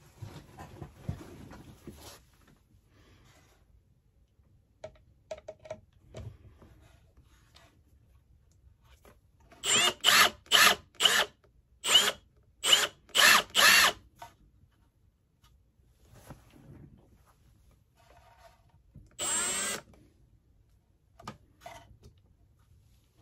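Cordless drill driving a screw through a plate into a pedestal base. It runs in about seven short trigger bursts around the middle, then one longer run near the end as the screw is driven down.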